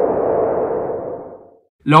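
Editing transition sound effect: a whoosh with a steady ringing tone, fading away over about a second and a half.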